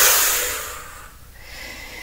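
A woman's long exhale, a breathy rush that is loudest at first and fades away over about a second.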